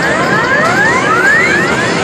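Arcade game's electronic sound effect: a rapid run of rising tone sweeps, one after another several times a second, over the steady din of a busy arcade.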